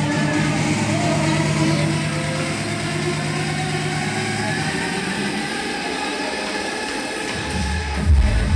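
Electronic dance music played loud over a club sound system, in a breakdown: a held bass note drops out about halfway through, leaving a thinner stretch without bass, and the pounding kick and bass come back in right at the end.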